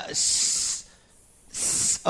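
A man's voice making two drawn-out hissing 's' sounds, demonstrating the English /s/ consonant: the first lasts about two-thirds of a second, the second comes near the end.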